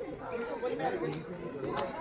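Background chatter: several people's voices talking quietly at a distance, with no single voice standing out.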